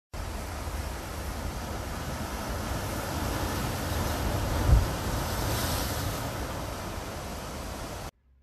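Surf washing and breaking over a rocky shore, a steady rushing hiss that swells about halfway through, with wind buffeting the microphone as a low rumble and one short low thump a little past halfway.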